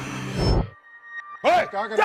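Dramatic television background score that drops out abruptly about a third of the way in, leaving a short gap, then a pitched, wavering sound rising in near the end.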